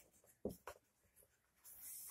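Faint marker pen squeaking on a whiteboard: two short strokes about half a second in, then near silence.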